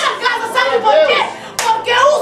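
A woman's voice calling out loudly in fervent prayer, with a few sharp hand claps, the loudest about one and a half seconds in.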